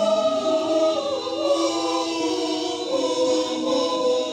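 A mixed choir of men's and women's voices singing a gospel song in harmony, holding long chords that change every second or so.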